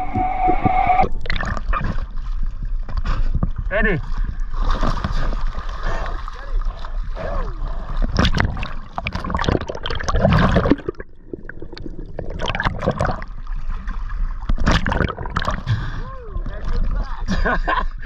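Water gurgling, splashing and sloshing around a diver's camera as he swims with a speared fish, muffled and irregular, with the sound opening up as he breaks the surface near the end.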